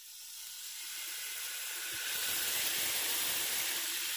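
Shrimp and butter sauce sizzling as they hit a hot cast-iron sizzling plate: a steady hiss that grows louder over the first two seconds and then holds.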